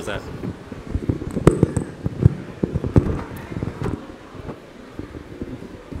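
Irregular knocks, bumps and rustling of handling close to the microphone, loudest in the first few seconds, over a murmur of voices.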